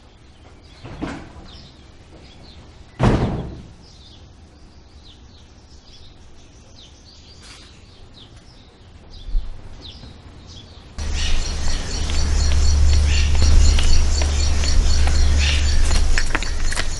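Birds chirping over quiet outdoor ambience, with a sudden wooden knock about three seconds in, like a door being shut. About eleven seconds in, the sound cuts to a louder ambience with a steady low rumble and rapid high-pitched chirping.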